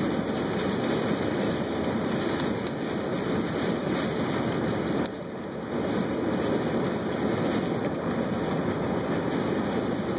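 Steady rush of tyres on a rain-soaked road, heard from inside a moving car in heavy rain, with a brief dip in level about five seconds in.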